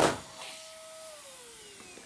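Electric balloon pump's motor whining steadily, just after a balloon bursts on its nozzle with a sharp bang at the very start. About a second in the whine begins to fall steadily in pitch as the motor slows down.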